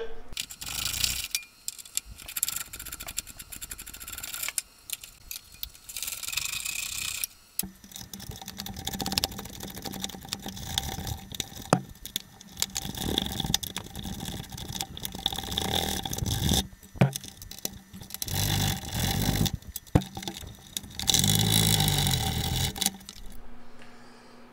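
Hand ratchet wrench clicking in spurts as 9/16 bolts are backed out of the fuel tank's strap brackets, with metal scraping and loose bolts and tools rattling.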